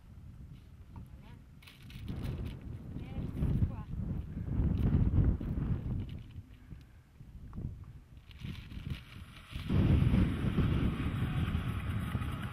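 Strong wind buffeting the microphone: a low rumble that swells and falls in gusts, loudest in two bursts, a few seconds in and again near the end.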